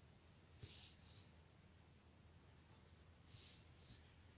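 A Crayola marker's felt tip drawn across paper in two short strokes, one about a second in and one near the end, as it traces a circle.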